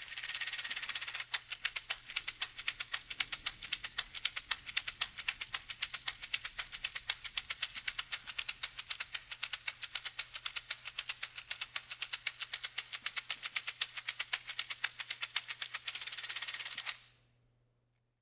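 Dried bean pod shaken back and forth horizontally as a shaker, the seeds inside rattling. It starts as a continuous rattle, settles after about a second into an even, quick rhythm of accented strokes, and stops about a second before the end.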